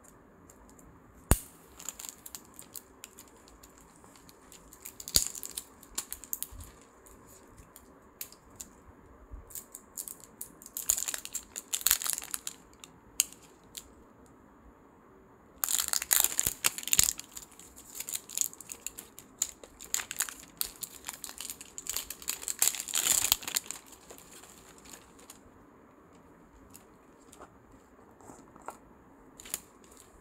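Thin clear plastic wrapping crinkling and tearing in irregular bursts, with a few sharp clicks, as a jar and its plastic-wrapped scoop are unwrapped. The crackling is densest and loudest for several seconds past the middle.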